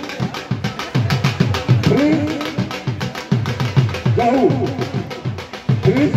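Traditional drums (dhol) played in a fast, driving beat, with a pitched melodic phrase coming back every couple of seconds over the drumming.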